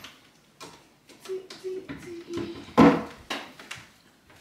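Kitchen cabinet door and items inside it being handled: a few light clicks and knocks, then one sharper knock about three seconds in.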